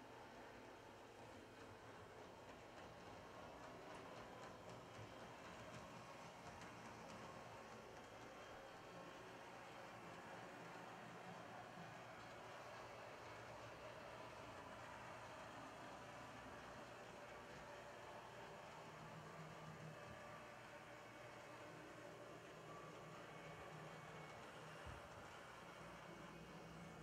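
Faint, steady whir of an HO-scale brass model diesel locomotive's electric motor and gears running along the track, with no engine sounds, since the model has no sound decoder.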